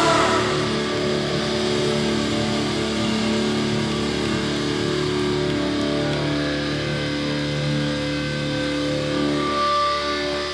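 Electric guitars ringing through the amplifiers on a live hardcore stage: a loud hit right at the start, then held notes and amp feedback sustaining, shifting to new pitches about halfway through and again near the end.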